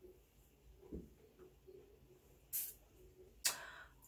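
Mostly quiet room with a faint low thump about a second in, then two short soft hissing sounds about a second apart near the end, the second a little longer: a damp face cloth rubbing against the face and a breath as it is lowered.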